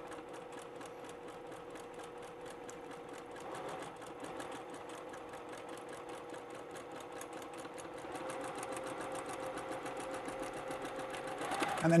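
Electric sewing machine stitching a seam at a slow, even speed: a steady motor hum with a rapid, even ticking of the needle, a little louder over the last few seconds.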